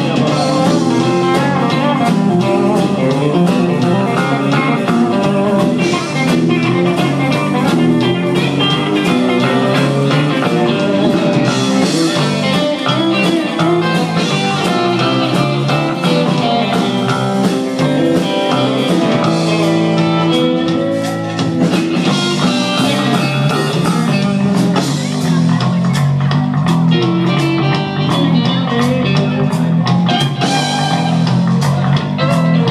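Live blues-rock band playing an instrumental stretch: electric guitars over bass and a steady drum beat.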